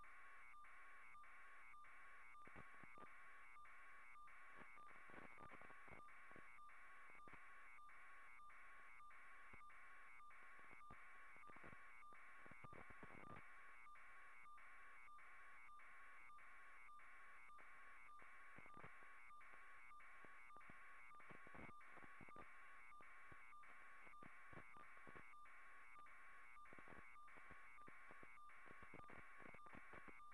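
Near silence: a faint, steady electronic tone with a regular tick about twice a second.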